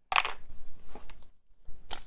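Rustling and light handling noise of paper and cardboard packaging as a fountain pen's use-and-care booklet and ink cartridges are taken from the box, with a short rustle just at the start and another near the end.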